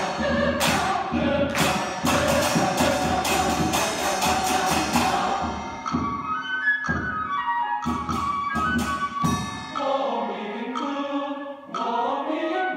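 Mixed choir singing with hand drums beating. About six seconds in, the full singing and steady drum strokes thin out to a lighter stepping melody line with only scattered strokes.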